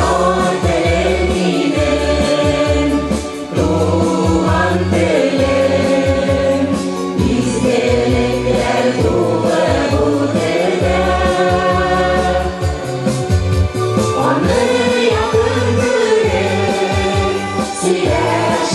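Mixed choir of men and women singing a Tatar song together, amplified over a stage sound system, with accompaniment carrying a steady, rhythmic bass.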